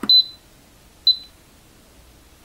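Two short, high-pitched beeps about a second apart from an Instant Pot Ultra Mini's control panel as its dial is pressed to select settings.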